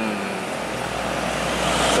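Road traffic noise with a heavy truck approaching; its low engine rumble and tyre noise grow louder toward the end.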